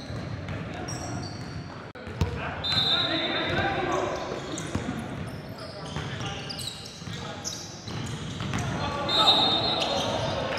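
Live game sound of indoor basketball: indistinct voices of players calling out, a basketball bouncing on the hardwood, and two short high squeaks, one about three seconds in and one near the end, typical of sneakers on the court.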